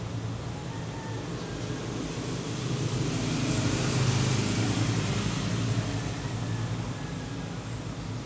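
A motor vehicle passing, a noisy rumble that swells to its loudest about four seconds in and then fades away.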